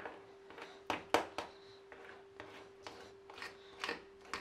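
A spoon stirring cake batter in a bowl, with short irregular scrapes and taps of the spoon against the bowl's side.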